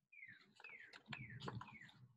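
A bird singing a faint run of short whistled notes, each sliding down in pitch, about three a second. Beneath it is a soft paper rustle as a picture-book page is turned.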